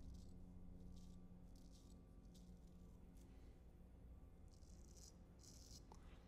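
Faint, short scratching strokes of a Ralf Aust 5/8" round point carbon steel straight razor cutting through lathered stubble on the neck. The strokes come in quick runs, with a pause of about a second in the middle, over near-silent room tone.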